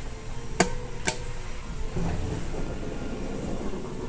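Two sharp clicks about half a second apart over a steady background hum.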